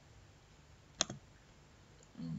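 A single computer mouse click about a second in, a right-click that opens a folder's context menu. Otherwise faint room tone.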